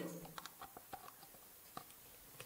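A few faint, light clicks and taps of hands handling a plastic pan-tilt Wi-Fi IP camera and its power lead, the sharpest click near the end.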